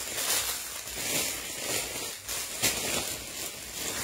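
Clear plastic bag crinkling and rustling as garments are pulled out of it, with a few sharper crackles.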